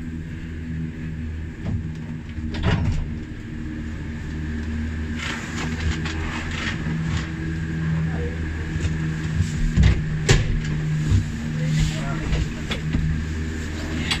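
Detachable gondola lift station machinery running with a steady low hum as cabins roll slowly through the station, with a few knocks and clanks, the loudest about ten seconds in.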